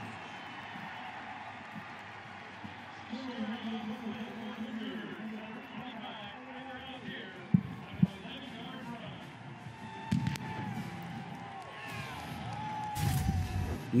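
Stadium ambience with music playing and indistinct voices in the background. About halfway through come two sharp knocks half a second apart, and a louder low rumble builds near the end.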